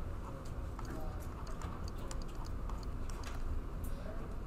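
Pen tip ticking and tapping against a writing screen during handwriting, an irregular scatter of light clicks over a steady low room rumble.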